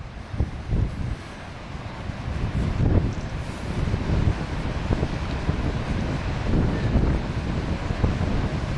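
Wind buffeting the camera microphone: a low, rumbling rush that grows louder over the first couple of seconds and then holds steady.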